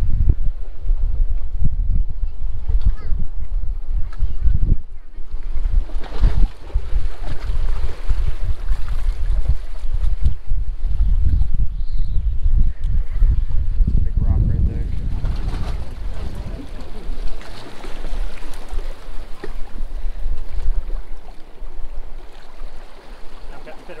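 Wind buffeting the microphone in uneven gusts, easing a little near the end, over the wash of inlet water against the jetty rocks.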